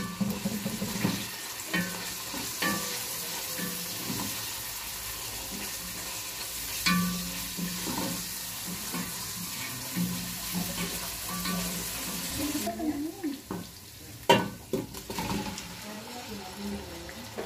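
Sliced red onions frying in a pot, sizzling steadily while a wooden spoon stirs them and clicks and scrapes against the pot. About three quarters of the way through the sizzle cuts off, and a few knocks of pot and dishes follow near the end.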